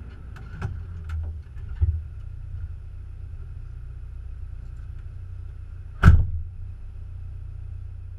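Excavator's diesel engine idling steadily with a low hum, heard from the cab, with several clicks and knocks in the first two seconds as the operator climbs in. A single loud thump about six seconds in.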